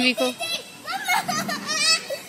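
Children shouting and calling out while running about playing: a brief call of "Mom!" at the start, then two high-pitched shouts in the second half.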